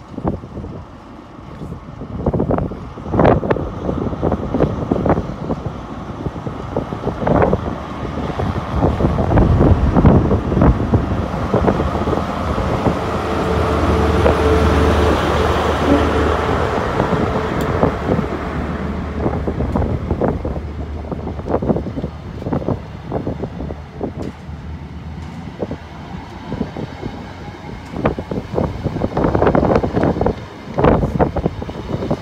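CrossCountry HST running through the platform: the diesel hum of the Class 43 power car and the rumble of its coaches passing close, swelling to its loudest about halfway and easing off after. Gusts of wind buffet the microphone throughout.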